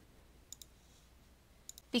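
Quiet room tone with faint, short clicks in two quick pairs, about half a second in and again near the end.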